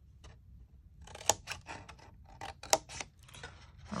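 Thick-bladed scissors snipping through cardstock, cutting along both sides of a score line: a run of short, sharp snips starting about a second in, two of them louder than the rest.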